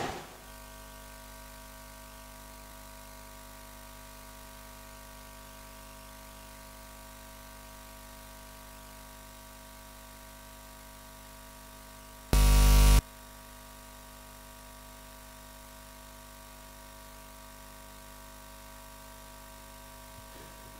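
Steady electrical hum made of several even, unchanging tones, as from a hall's PA system standing open, with one loud, abrupt burst of buzz about twelve seconds in that lasts just over half a second and then cuts off.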